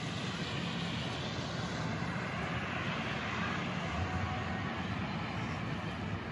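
Steady vehicle noise, a low rumble under a rushing hiss that swells and fades around the middle.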